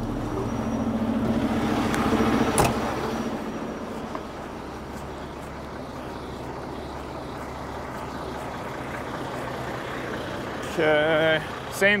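Heavy trucks' diesel engines idling, with a single sharp knock about two and a half seconds in, when the cab door shuts. After it the idle settles into a steadier, quieter rumble, and a voice comes in near the end.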